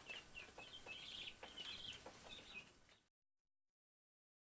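Guinea keets peeping under a brooder heat lamp: many short, high, faint chirps that cut off suddenly about three seconds in.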